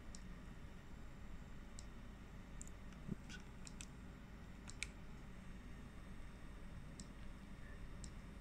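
Several faint clicks of buttons being pressed on a small oscilloscope board, bunched between about two and five seconds in, with one more near the end.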